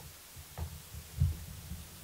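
Soft, low handling thumps and rumble, a few in irregular succession, the loudest a little over a second in, as a hand moves and taps a smartphone held close to the microphone.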